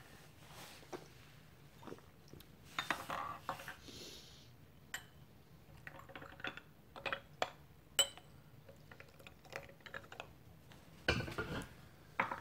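Hot water poured from a cast-iron kettle into small porcelain gaiwans, with light clinks of porcelain lids and cups, several sharp clicks in the second half.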